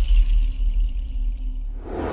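Closing ident sting for a TV channel's logo: a deep bass rumble under fading electronic music, with a brief swell of sound near the end.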